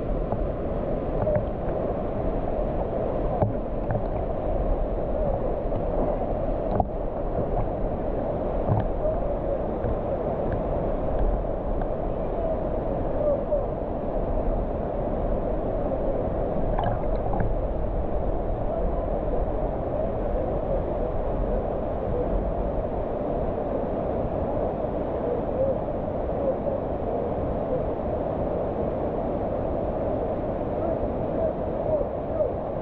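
A waterfall and the river below it rushing steadily, picked up close to the water as a low, even rush, with two faint knocks a few seconds in.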